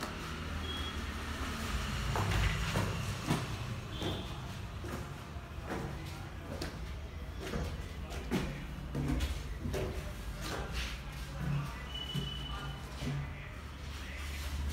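Footsteps climbing bare concrete stairs, one step every second or less from about two seconds in to near the end, over a low steady rumble.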